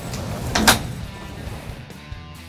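One sharp click, a little over half a second in, as the soft roll-up tonneau cover's edge is pulled down and its latch snaps into the slot on the bed rail, the sign that the cover is latched.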